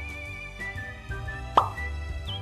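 Light background music with sustained tones. About one and a half seconds in comes a single quick, rising cartoon 'pop' sound effect.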